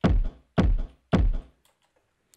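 Electronic kick drum sample played from a sampler, hit three times about half a second apart, each with a sharp attack and a deep low end that dies away within half a second; the hits stop about halfway through.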